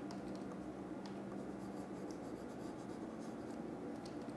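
Faint dry scratching and scattered light ticks from a hand-moved computer pointing device as brush strokes are painted, over a steady low hum.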